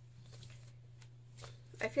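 Faint rustling and light taps of cards being handled and drawn from a deck, over a low steady hum.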